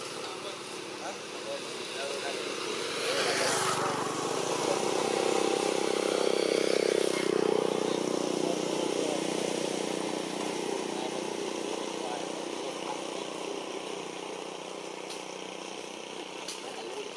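A motor vehicle's engine running, growing louder for several seconds and then slowly fading, as if it passes by, with voices faintly in the background.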